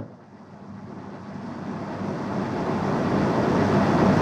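A steady hiss of noise that grows gradually louder over about four seconds.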